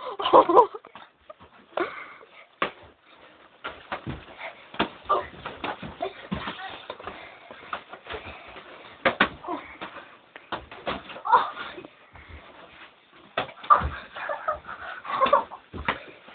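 Irregular thumps and knocks of two boys scuffling and boxing, with short bursts of their voices in between.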